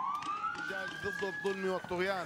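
A police vehicle siren wailing: its pitch bottoms out, rises again and holds high, with voices faintly underneath.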